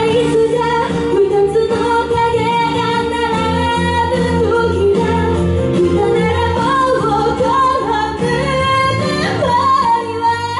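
A woman singing a pop song live into a handheld microphone over full instrumental accompaniment, amplified through a club PA. The voice carries a melody with long held, gliding notes.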